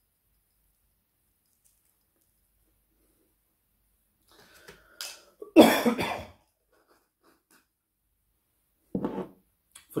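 After a few seconds of near silence, a man coughs briefly about halfway in, with a second, shorter throat sound a second before he starts speaking again.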